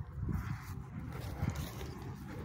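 Footsteps on dirt and grass, irregular soft thumps over the low rumble of a hand-held phone being carried while walking.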